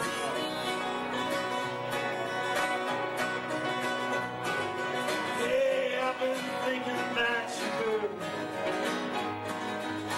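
A live acoustic country-style band playing: strummed acoustic guitar, electric bass and electronic keyboard chords, with a melody line winding through the middle.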